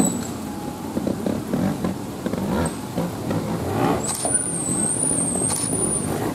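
Trials motorcycle engine running at low revs with short throttle blips as the bike climbs through a rocky section. A thin, high, wavering tone sounds over it near the end.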